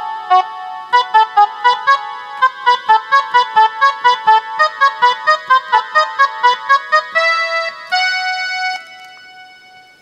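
Casio SA-41 mini keyboard playing a quick single-note melody, the instrumental interlude of a Chhattisgarhi film song, at about three to four notes a second. About seven seconds in it gives way to two long held notes that fade out near the end.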